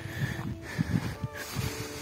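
Wind buffeting a phone's microphone in irregular low rumbles as the camera is carried along, with faint sustained music notes underneath.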